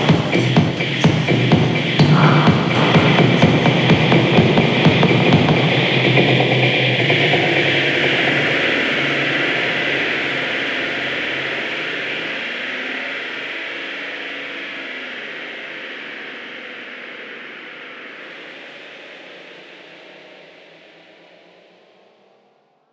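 Hard minimal techno: the driving kick-drum beat drops out about six seconds in, leaving a hissing synth wash that fades out slowly to the end of the mix.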